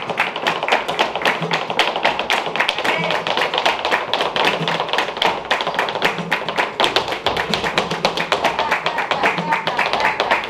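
Flamenco footwork (zapateado): a rapid, even run of heel and toe strikes from heeled dance shoes on a wooden stage, with hand-clapping (palmas) keeping time alongside.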